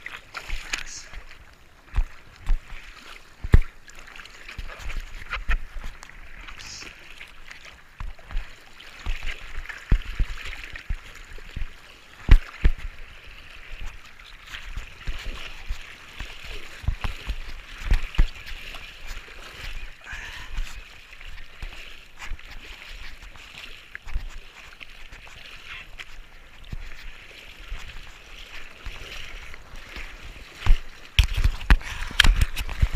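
Seawater sloshing and splashing against a surfboard, close to a board-mounted camera, with frequent sharp slaps of water at irregular intervals over a steady hiss.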